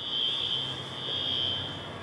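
A steady, high-pitched continuous whine that holds one pitch without beeping or breaks, with a faint low hum beneath it.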